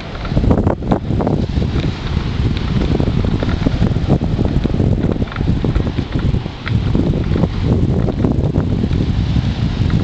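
Wind buffeting the camera's microphone in gusts: a loud rumble that keeps swelling and dipping.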